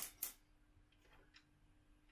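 Near silence with a few faint ticks and clicks, two sharper ones right at the start, as the oil drain plug of a Honda EU70is generator is turned in by hand into its aluminium engine block. A faint steady hum sits underneath.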